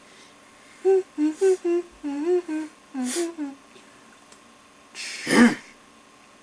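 A person humming a short wordless tune, a string of held notes stepping up and down, followed near the end by a loud, breathy vocal burst.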